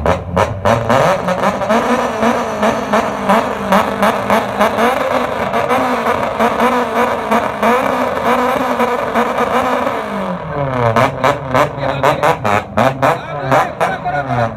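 Nissan Silvia S15's SR20 four-cylinder engine revved and held at high rpm through a loud aftermarket exhaust, for a sound-level reading taken at the muffler. From about ten seconds in it is blipped repeatedly, revs rising and falling.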